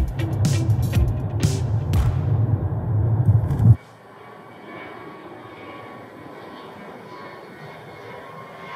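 Music with a heavy bass beat that cuts off suddenly a little under four seconds in, followed by the quieter, steady noise of an airplane flying overhead.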